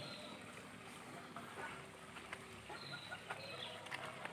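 Faint outdoor ambience with a few short, high, falling bird chirps and scattered light clicks.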